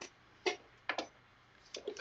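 A few short, quiet clicks and taps, about four in two seconds, from hands handling things at a sewing machine and its clear acrylic extension table.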